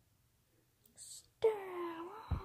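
A short breathy hiss about a second in, then a high-pitched voice making a drawn-out vocal sound that slides down in pitch.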